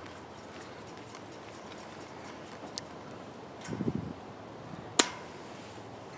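Pliers twisting a wire tie on galvanized hardware cloth: quiet handling with a faint click, a short low rumble a little before four seconds in, then one sharp metallic click about five seconds in.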